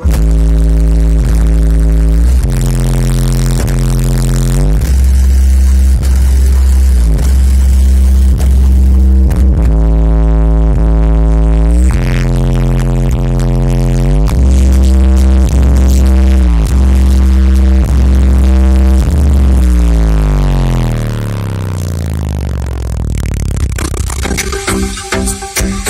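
Bass-heavy electronic music played very loud through a car audio install of twelve Hertz SPL Show subwoofers. Deep sustained bass notes change pitch about every second, with a run of falling sweeps near the end.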